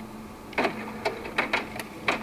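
Canon inkjet all-in-one printer's mechanism running through its start-up after being switched back on, with a low steady hum and several sharp clicks about a second in and near the end.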